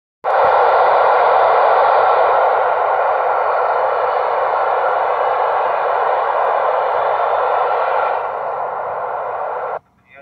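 Loud, steady hiss of radio static from an Icom ID-4100 2m/70cm radio's speaker. It starts suddenly, eases slightly near the end and cuts off abruptly just before radio speech begins.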